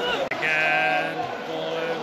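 Football supporters in the stand singing a chant, many voices holding long sung notes.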